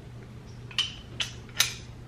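Three light metallic clicks, about 0.4 s apart, from a Can-Am Maverick X3 front hub assembly being handled, its metal parts knocking together, over a steady low hum.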